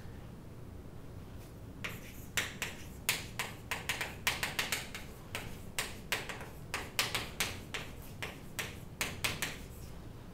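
Chalk writing on a blackboard: an irregular run of quick, sharp taps and short scratches as the letters go down, starting about two seconds in.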